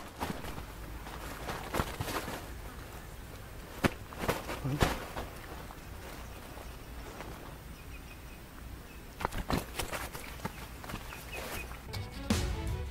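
Rustling and a few short light knocks and clicks from hands handling things close to the microphone, in two clusters, about four seconds in and again near the end, over a faint steady outdoor background.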